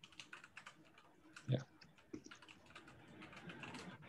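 Faint typing on a computer keyboard: quick, irregular key clicks.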